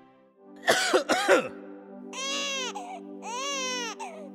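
Infant crying: a burst of short, loud sputtering cries about a second in, then two long wailing cries. A soft, sustained music chord plays underneath.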